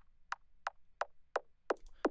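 A soloed drum and bass kick drum layer playing six even hits, about three a second. Its low end is cut away by an automated EQ low cut, so only a thin, clicky upper part of each hit is left, with a slight downward pitch drop.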